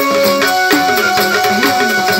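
Live Marathi devotional folk band music: held melody notes over a hand drum whose low head swoops in pitch on each stroke, two or three strokes a second.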